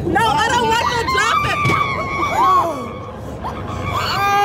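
Several riders on a fairground ride screaming and shrieking over one another, high-pitched, with one long held scream through the middle.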